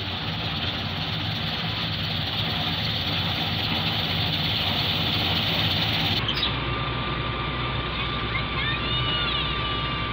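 Wheat-cutting machine running with a steady engine drone. About six seconds in the sound changes abruptly and a thin steady tone joins it.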